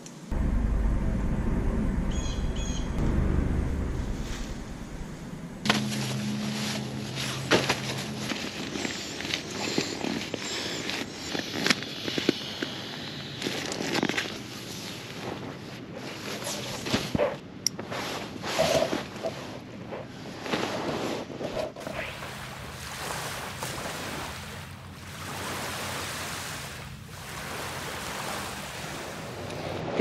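Nylon tent fabric and camping gear rustling and knocking in irregular bursts as a backpacking tent is pitched and fitted out with a sleeping pad and sleeping bag. A low rumble fills the first five seconds or so.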